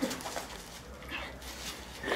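Faint, soft calls from a chicken held in a person's hands, heard in a lull between voices.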